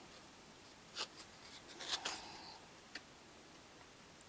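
Quiet room tone with a few faint clicks and a soft rustle, about one, two and three seconds in.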